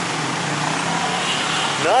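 Steady noise of congested street traffic, with motorbike and car engines running close by and a faint low engine hum.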